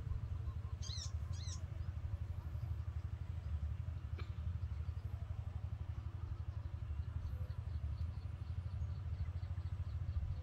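A small engine running steadily, a low rumble with a fast even pulse. Two short, high, bending squeaks come about a second in.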